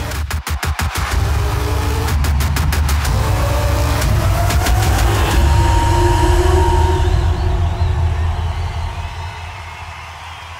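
Electronic promo music with a heavy bass line and rapid, chopped stutter beats. A rising sweep comes a few seconds in, and the music fades out over the last couple of seconds.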